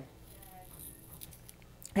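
Faint scrapes and light clicks of a paring knife peeling the skin off fresh ginger root, over quiet room tone.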